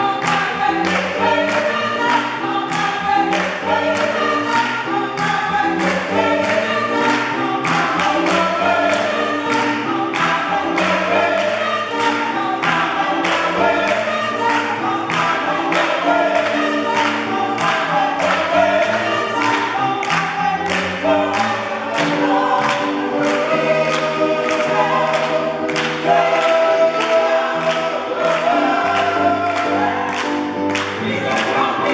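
Gospel choir singing an upbeat song in several voice parts, with hands clapping along on a steady beat.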